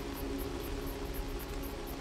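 Soft ambient soundscape bed: an even hiss with a faint sustained drone of a few low held tones, and a faint fast pulsing high above it.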